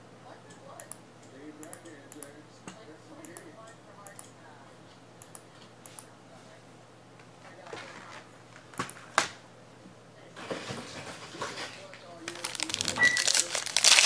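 Faint scattered clicks, then from about ten seconds in the crinkling of a foil trading-card pack wrapper being handled and torn open, growing loud near the end.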